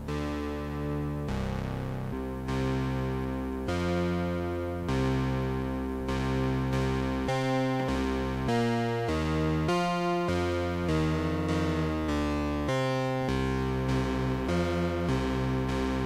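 Mutable Instruments Plaits synthesizer module in its classic-waveforms model playing a detuned classic synth patch: two detuned oscillators sounding a sequenced run of sustained notes that change about once or twice a second, with a brief wavering in pitch about two-thirds of the way through.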